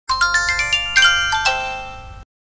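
Short bell-like chime jingle for a logo intro: about six quick notes climbing in pitch, then a brighter chord about a second in and two lower notes about a second and a half in, left ringing.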